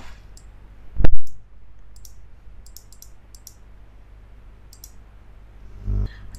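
Computer mouse clicking a few times, with one loud thump about a second in, over a steady low hum.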